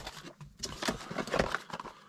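Cardboard packaging being handled: a scatter of light, irregular taps, scrapes and rustles as card pieces are lifted out of a reel box.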